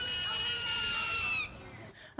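A bird's single long, clear, high-pitched call that holds nearly level and falls slightly in pitch, ending about one and a half seconds in.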